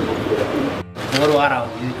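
Fantail pigeons cooing in a loft, with the sound dropping out briefly a little under a second in.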